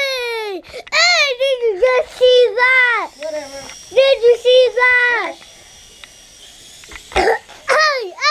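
A child's high-pitched wordless vocalizing, a string of short sliding calls broken by pauses, with a short knock near the end.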